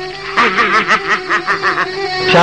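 A man laughing in a quick run of short, pitched bursts, over steady background music.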